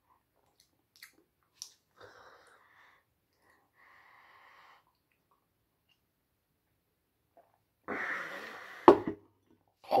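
A man drinking cider from a pint glass: faint sipping and swallowing sounds. Near the end comes a loud breathy 'oh' exhale of distaste at the strong cider, and a sharp knock as the glass is set down on the table.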